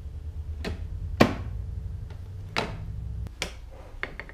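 Hard plastic knocks as the upper section of a Litter Champ litter-disposal pail is fitted down onto its base: four sharp knocks, the loudest about a second in, over a low steady hum.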